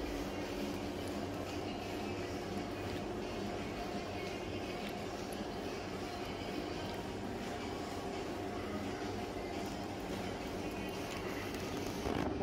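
Steady whir of an indoor exercise bike's flywheel being pedalled, a continuous even drone.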